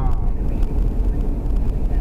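Steady low rumble of tyre and engine noise heard inside a taxi's cabin while it cruises along an expressway.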